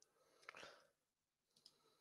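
Near silence: room tone with a faint click and brief rustle about half a second in, and another faint tick near the end.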